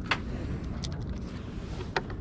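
Steady low outdoor rumble, with a few light clicks from trading cards in plastic sleeves being handled.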